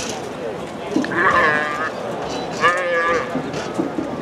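A roped calf bawling twice, in two short wavering calls about a second and a half apart.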